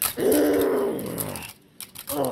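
A person voicing a long growling dinosaur roar for a Grimlock (Dinobot) toy. The pitch rises then falls, and the roar dies away about a second and a half in.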